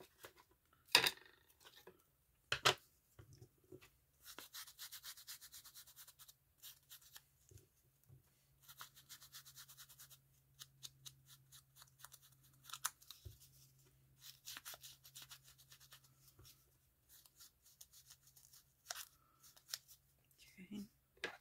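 Quick rubbing and dabbing strokes of an ink applicator against the torn edges of a paper scrap, inking them. The strokes come in several runs of a few seconds each, with a few sharper taps of paper being handled between them.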